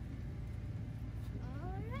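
A Jeep's engine idling low and steady, heard from inside the cab. Near the end a man's voice rises in one drawn-out call.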